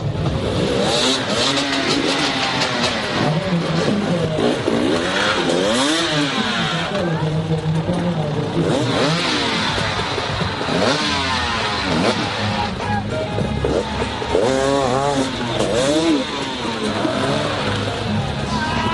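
Several dirt bike engines revving up and down again and again in quick rising and falling sweeps, as riders struggle over obstacles, with music playing underneath.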